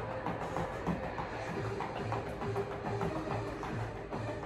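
Upbeat aerobics workout music with a steady, even beat.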